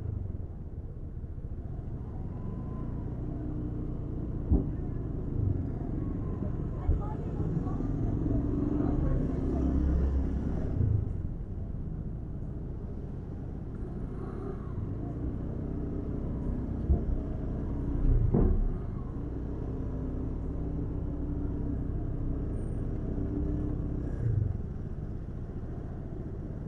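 Motor scooters and cars crawling in congested street traffic: a steady low engine hum, with a few brief louder moments from nearby vehicles.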